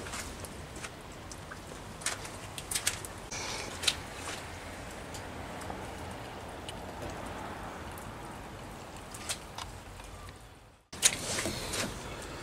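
Steady low background noise with a few scattered light clicks and taps, cutting out completely for a moment near the end.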